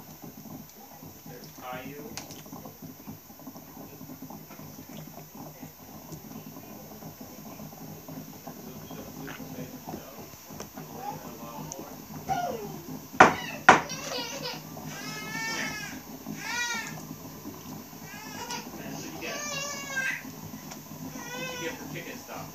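A child's high-pitched voice making several short, wavering squeals or calls in the second half, over a steady low room hum. Two sharp knocks a little past halfway are the loudest sounds.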